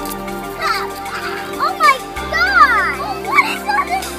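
Young children's voices calling out and squealing in high, gliding pitches over background music with steady held notes.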